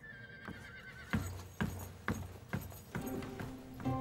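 Steady footsteps, about two a second, moving away. Background music comes in near the end.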